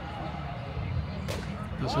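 Faint background voices at a baseball field over a steady low rumble, with two short, sharp clicks in the second half.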